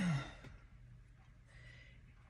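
A woman's short sigh right at the start, a breathy exhale with her voice falling in pitch, followed by quiet with a faint steady low hum.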